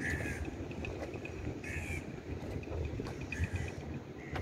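A crow cawing twice, about a second and a half apart, followed by a run of short high pips, over a low steady outdoor rumble.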